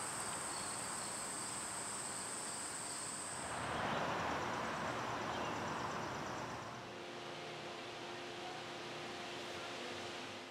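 Insects trilling: a steady, high, even tone that stops about three and a half seconds in. It gives way to a louder rush of noise for a few seconds, then a quieter low, steady hum.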